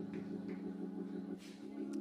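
Organ holding a soft, sustained low chord, the notes steady throughout.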